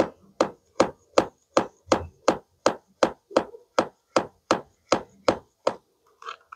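Pink plastic toy knife sawing back and forth on a plastic play-food apple held together with velcro: short, sharp plastic-on-plastic strokes in a steady, even rhythm, a little under three a second.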